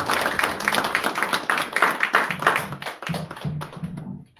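A small audience clapping, with some laughter mixed in.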